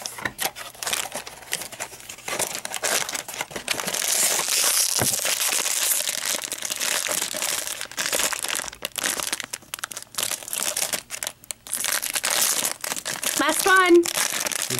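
Foil blind-box bag crinkling continuously as it is handled and torn open by hand. A short voiced sound comes near the end.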